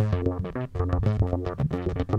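Behringer Neutron analog synthesizer holding a steady bass note while a random LFO from the CV Mod app jumps its filter cutoff several times a second, so the brightness of the tone changes in rapid, choppy steps.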